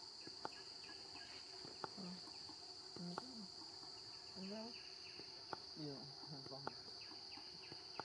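Insects drone steadily at a high pitch, faintly. A few short, soft, low voice-like calls come in the middle, and a handful of sharp clicks fall throughout.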